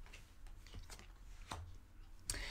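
Faint handling of oracle cards on a cloth mat: a few soft clicks and taps as a card is set down, over a low steady hum.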